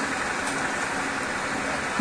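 Steady, even background noise with no distinct sound standing out.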